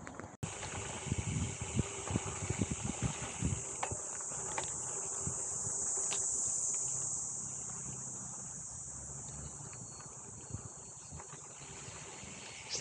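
High, steady insect chirring from the tall grass, swelling through the middle and fading again. In the first few seconds it is mixed with irregular knocks and rattles from a gravel bike rolling over a rough dirt singletrack.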